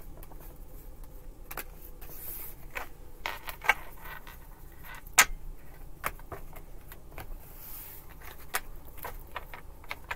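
A deck of tarot cards shuffled and squared by hand: an irregular run of soft rustles and card clicks, with two sharper snaps, one about three and a half seconds in and one about five seconds in.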